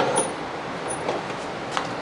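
A few faint knocks as a wooden board is shifted and set in a bench vise, over a steady hiss.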